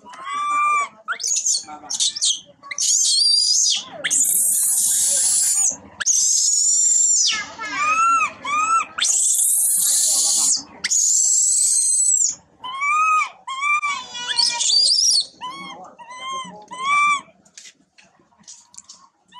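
Infant long-tailed macaque screaming and crying: runs of short, rising-and-falling squeals broken by a few long, shrill screams. This is the distress calling of a baby left by its mother.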